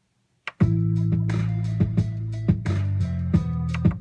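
A Logic Pro X project playing back through the speakers, started from the MIDI keyboard's play button: after about half a second of silence, music with a sustained bass and drum hits roughly every 0.7 seconds comes in. It stops suddenly just before the end.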